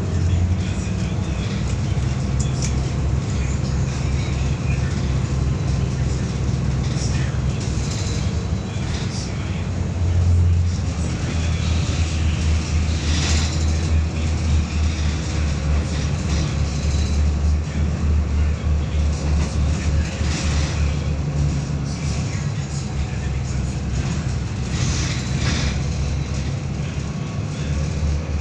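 Volvo B7RLE bus's rear-mounted six-cylinder diesel engine running under way, heard from inside the passenger cabin as a steady low drone that swells briefly about ten seconds in. A few short sharp noises stand out in the middle and near the end.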